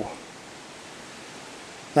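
Steady, even hiss of outdoor background noise, with no distinct event in it.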